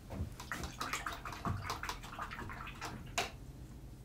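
A paintbrush being swished and rinsed in a jar of water: a run of irregular small splashes, with a sharper one near the end.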